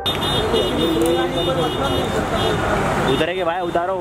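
Street traffic noise from cars moving slowly, with people talking in the background. Near the end a warbling, wavering tone comes in.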